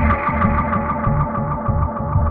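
Electronic grime instrumental beat: a fast run of even hi-hat ticks over held synth notes and a pulsing bass line.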